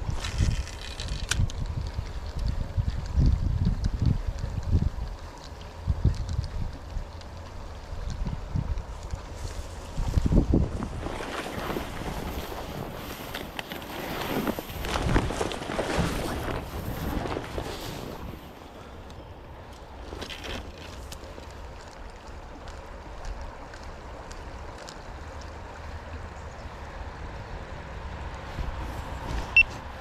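Wind buffeting the microphone in gusts over the steady rush of a small creek, with a louder stretch of rustling and scraping around the middle as the camera pushes through streamside brush.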